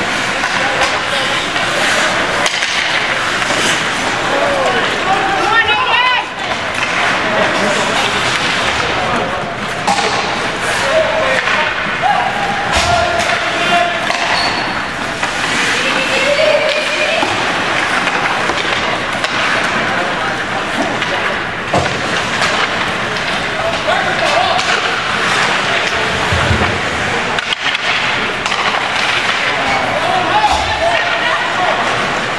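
Ice hockey play: skates scraping on the ice, with scattered sharp clacks of sticks and puck. Spectators shout and talk throughout.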